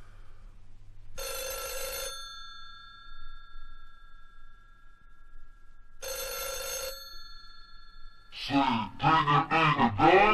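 Telephone bell ringing twice, about five seconds apart; each ring lasts under a second and its tone lingers after. From about eight seconds in, a loud voice with its pitch sliding up and down.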